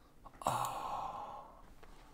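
A man sighing: a single breath out lasting about a second, loudest at its start and then fading away.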